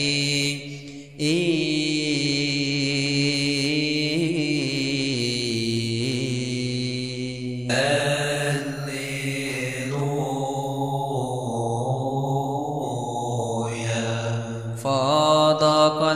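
A slow, chant-like melody in long held notes that shift in pitch, over a steady low drone, with a brief drop about a second in.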